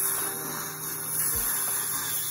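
Steady high-pitched hiss from a dental instrument working in a patient's mouth during a cleaning.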